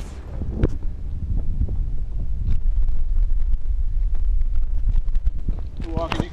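Wind buffeting a body-worn camera's microphone, a steady low rumble, with scattered knocks and clicks from footsteps and jostling kit.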